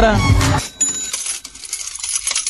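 Music and voice break off just over half a second in, giving way to a comic sound effect of jingling coins.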